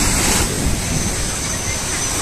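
Steady wash of wind on the microphone and surf, with a faint thin high whine coming in about halfway through.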